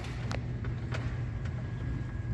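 A steady low hum fills the room, with a few light clicks and taps, the clearest near the start and about a second in.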